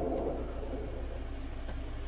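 A low, steady background rumble with a faint hiss.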